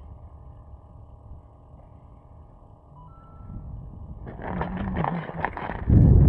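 Low steady wind rumble on the microphone, then from about four seconds in a louder stretch of rustling, scraping handling noise with short clicks as the fish is brought up through the ice hole.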